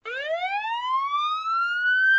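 Ambulance siren sound effect: a single wail rising smoothly and steadily in pitch.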